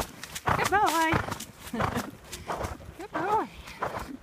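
A Thoroughbred's hoofbeats on a dirt trail covered in dry leaves, irregular strikes throughout. A rider's voice comes in twice, about a second in and again near the end, in short words that rise and fall.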